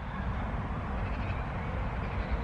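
Wind buffeting the microphone outdoors: a steady, low, uneven rumble with a faint hiss over it.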